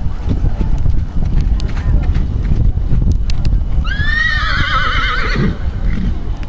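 A horse whinnying once, about four seconds in: a call that rises, then quavers for about a second and a half before it drops away. Wind rumbles on the microphone throughout.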